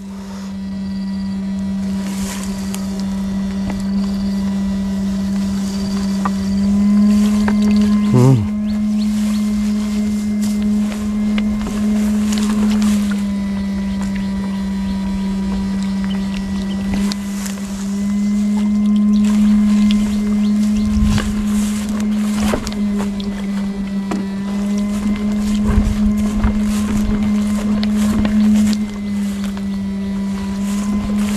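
Electric fish shocker humming steadily, a loud buzzing drone that holds one pitch, while its electrode pole is worked through the water. A few short knocks and rustles sound over it, about eight seconds in and again later.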